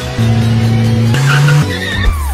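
Race car driving hard on a hill-climb run with tyres squealing, mixed with background music.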